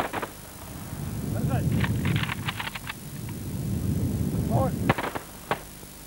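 Rifles fired into the air in ragged salute volleys: a few shots at once, a longer string of shots about two seconds in, and a few more near the end. Voices shout and a crowd-like rumble rises before each volley.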